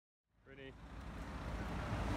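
Outdoor traffic noise with a low rumble, coming up out of silence about a third of a second in and growing louder. A short pitched call sounds about half a second in.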